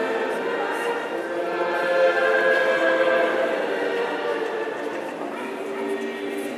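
Several voices singing a slow church chant together, holding long notes.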